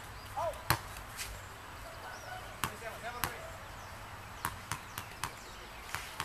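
Soccer ball being kicked and bouncing on a hard tennis court: sharp separate thuds, the loudest less than a second in, then a run of quick bounces about four a second in the second half.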